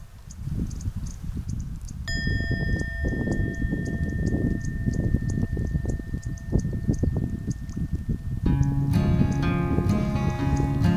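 Low, irregular outdoor rumble on the microphone. A steady high ringing tone comes in about two seconds in and holds until acoustic guitar music starts near the end.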